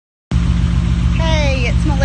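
A C5 Corvette's V8 engine idling close by with a steady, pulsing low throb.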